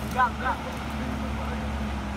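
Large diesel bus engine idling with a steady low drone, with a few spoken words in the first half second.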